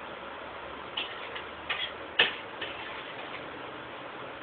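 A few sharp taps from the signer's hands striking each other or her body, the loudest about two seconds in, over a steady hiss.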